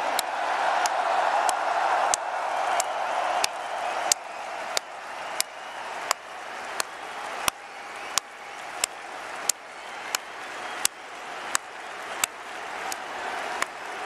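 Large stadium crowd cheering and applauding in a standing ovation. Over it, one pair of hands claps sharply and steadily close to the microphone, about one and a half claps a second. The crowd's cheering fades toward the end.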